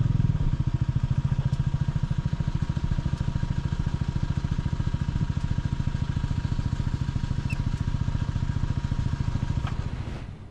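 Motorcycle engine idling steadily while the bike stands still, fading out at the very end.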